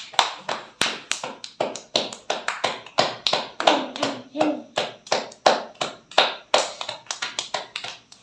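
Roti dough being patted flat by hand: a steady run of sharp slaps, about three a second.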